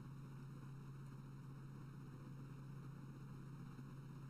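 Near silence: a steady low hum and faint hiss of room tone, with no other sound.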